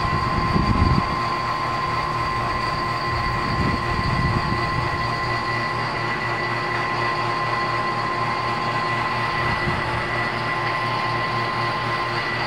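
Electric refrigeration vacuum pump running steadily, a high whine over a low hum, evacuating an R32 air-conditioner system after a leak so that no air is left mixed in the lines.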